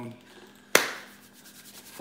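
A single sharp knock about three-quarters of a second in, ringing out briefly, with only quiet room noise around it.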